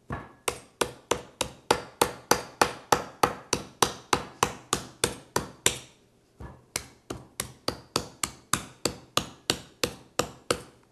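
A chef's knife chopping repeatedly into a young coconut's hard exterior, about three to four sharp strikes a second. There is a short pause about six seconds in, then the chopping resumes a little softer.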